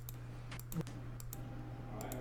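A handful of sharp, irregular clicks over a steady low hum.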